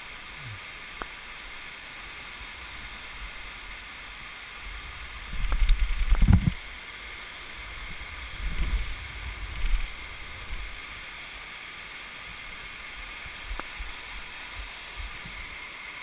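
Steady rush of a mountain stream cascading down a rock canyon. Low rumbling buffets on the microphone come about five to six seconds in, the loudest thing in the clip, and again around nine seconds.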